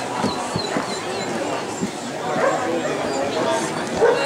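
A dog giving several short, high-pitched cries over a steady murmur of voices in a large hall.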